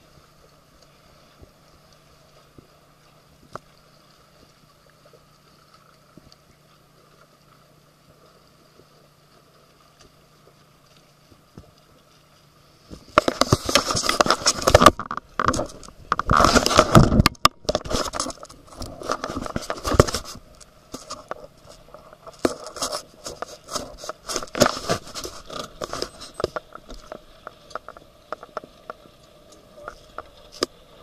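A faint steady hum. About halfway in, loud, irregular crackling and scraping noise starts on the camcorder's microphone, then eases off toward the end.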